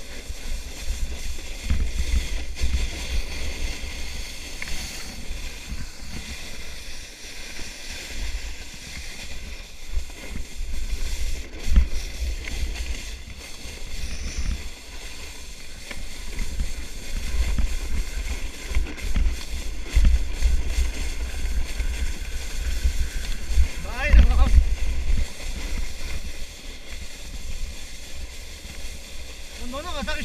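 Wind rushing over the microphone and a plastic sled scraping over groomed snow on a fast downhill run: a steady rushing noise with heavy low buffeting that rises and falls.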